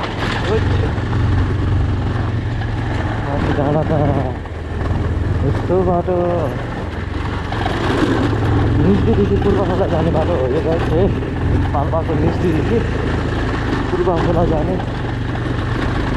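Motorcycle engine running at steady low revs while being ridden over a rough gravel road, with a person's voice coming and going over it several times.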